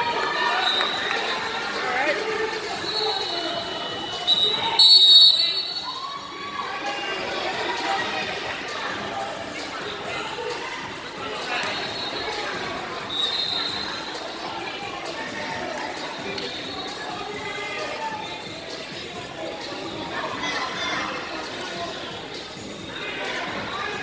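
Hall ambience at a wrestling tournament: many overlapping voices from spectators and coaches, with scattered thuds. About five seconds in, a short, loud, high whistle blast sounds, the referee's whistle starting the bout.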